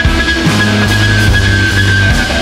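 A live rock band playing an instrumental passage on drum kit, keyboards and electric guitar, with a held high note running over a bass line and drum hits.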